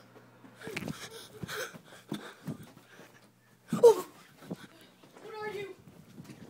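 Children's voices making short, unclear vocal sounds and breaths, loudest about four seconds in, with a brief held pitched sound near the end.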